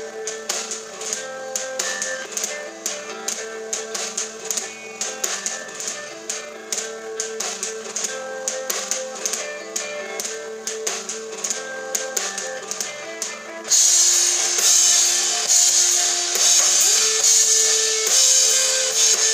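Live rock band playing an instrumental passage: a repeating guitar figure over light, regular drum ticks, then about fourteen seconds in the full band comes in much louder, with crashing cymbals and drums.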